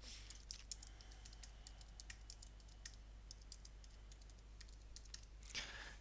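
Faint typing on a computer keyboard: a run of quick, irregular key clicks as a short name is typed into a text field.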